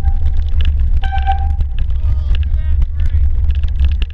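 Steady, loud low rumble of wind and riding vibration on an action camera's microphone while mountain biking down a snowy trail, with short high squeals coming and going.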